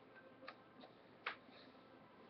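Near silence: room tone broken by a few faint short clicks, the clearest just over a second in.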